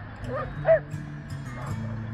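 A dog gives two short, high yips, the second, just under a second in, sharp and loud, over background music.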